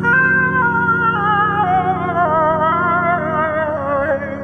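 Worship song: a man's sung vocal line with vibrato, stepping downward in pitch over sustained instrumental chords, which change near the end.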